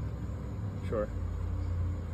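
Low, steady vehicle rumble that grows slightly stronger in the second half, with one short spoken word about a second in.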